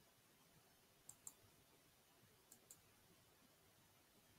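Two pairs of faint computer mouse clicks, about a second and a half apart, over near silence.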